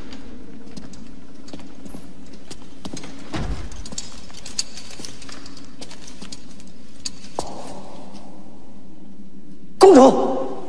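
Horse hooves clip-clopping in irregular clicks over a steady low background, ending in a short, loud pitched cry.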